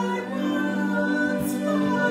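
Choir singing Christian music, with voices moving over a steady held low note.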